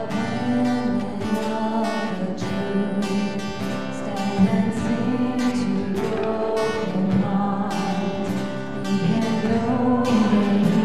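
Live worship band playing a contemporary praise song, a strummed acoustic guitar to the fore, with singing over it.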